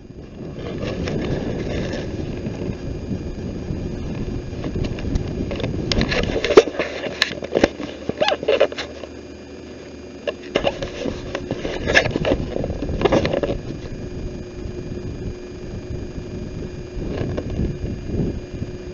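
Handling noise from a small camera being picked up and moved about: its microphone rubs against hands and cloth in a rough rumble, with clusters of knocks and clicks about six seconds in and again about twelve seconds in. A faint steady whine sits beneath.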